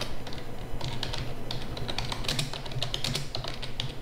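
Typing on a computer keyboard: a quick run of keystrokes, about four a second, over a steady low hum.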